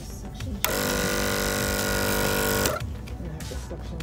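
A small electric pump motor on medical equipment runs for about two seconds with a steady buzzing hum, starting and cutting off suddenly.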